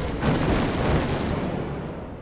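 A loud crash about a quarter-second in, from a large gong struck together with a marching band's drums, ringing out and slowly fading.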